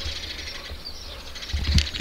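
Faint bird chirping in the background, with a low wind rumble on the microphone and a brief click near the end.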